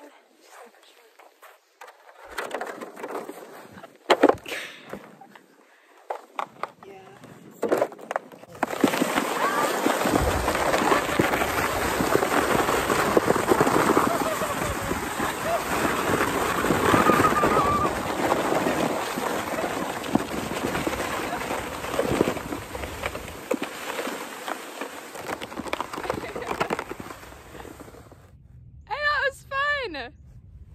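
A sled sliding down a snow-covered slope, heard as a loud, steady scraping hiss for almost twenty seconds, starting about nine seconds in. A short high vocal cry follows near the end.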